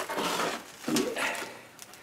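Rustling and scraping of a board headliner panel as it is pulled down from an old pickup's cab roof, with loose mouse-nest debris sliding off it. There is a noisy rustle at the start and another short scrape about a second in.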